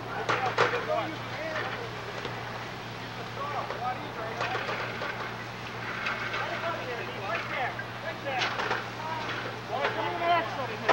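Indistinct, distant voices of people calling out over a steady low hum, with a few sharp knocks.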